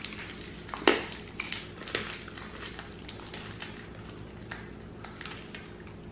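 Quiet sounds of eating hard candy and handling its plastic wrapper: one sharp click about a second in, then a few light clicks and crinkles.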